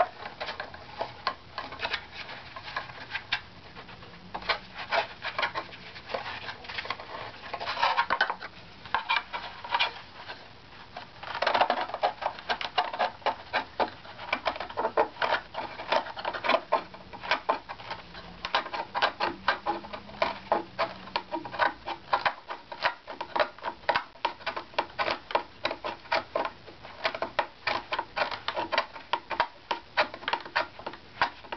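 A hand scraper taking short, quick strokes across the wood of a violin back plate, several scratchy scrapes a second, with a denser run of strokes about twelve seconds in. Wood is being shaved from one strip of the plate to raise its tap-tone pitch, which is still too low.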